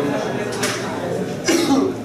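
A person coughs sharply about one and a half seconds in, over a low murmur of voices.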